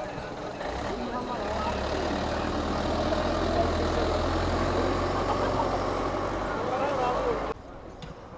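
Truck engine running as it drives past, a steady low rumble that builds up over the first couple of seconds and holds, then cuts off abruptly shortly before the end.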